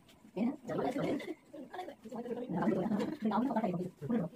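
Speech: voices talking in bursts with short pauses, in a language the transcript could not make out.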